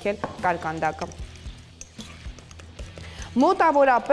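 A woman speaking over a soft music bed, with a pause of about two seconds in the middle. In the pause, a spoon stirring flour into wet dough in a glass bowl is faintly heard.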